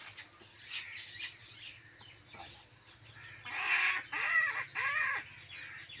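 A rooster crowing once, about three and a half seconds in, in several arching segments lasting under two seconds; it is the loudest sound here. A few short high-pitched bursts come earlier.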